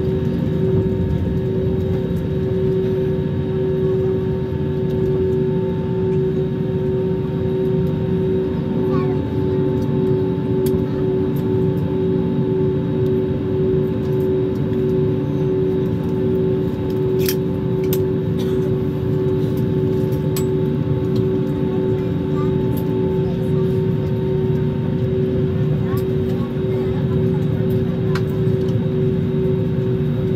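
Airliner's jet engines running at taxi power, heard inside the cabin: a steady hum carrying a strong, even tone, with a few faint clicks about two thirds of the way through.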